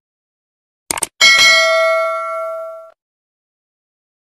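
A few quick mouse-click sound effects, then a bright notification-bell ding that rings for about a second and a half and fades out.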